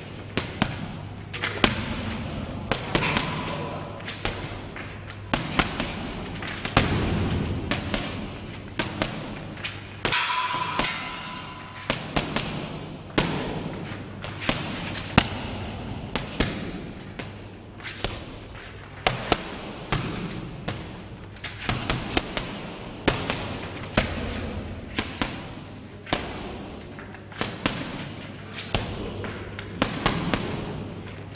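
Vandal Fight leather boxing gloves punching an 80 kg heavy bag: sharp thuds coming in quick combinations, several blows a second, with short pauses between the flurries. A low steady hum runs underneath.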